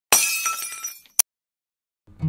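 Glass shattering sound effect: a sudden crash with high ringing shards that fades out over about a second, followed by a single sharp click.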